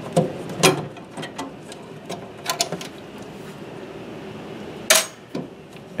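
Hands working a retaining clip and the plastic fittings of a boiler's domestic mixing valve: a scattering of light clicks and knocks, the sharpest about five seconds in.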